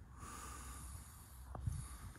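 A faint breath close to the microphone, over a low steady rumble, with a couple of light clicks about a second and a half in.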